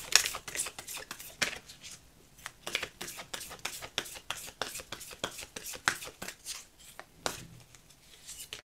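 A deck of Spirit Animal Oracle cards being shuffled by hand: a quick, irregular run of card clicks and slides as the cards are split and passed between the hands.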